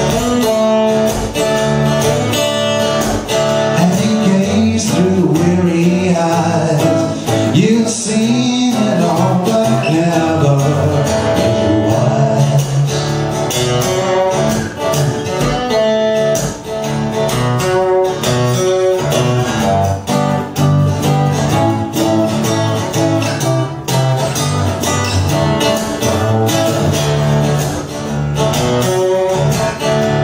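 Steel-string acoustic-electric guitar with a capo, strummed steadily in an instrumental passage of a solo live song.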